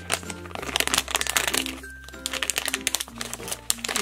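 Crinkling of a foil blind bag as hands handle it and tear it open, with rapid, irregular crackles over background music with a steady low bass line.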